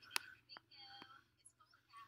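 Three sharp computer-mouse clicks, the first and loudest a moment in, with faint whispered mumbling between them.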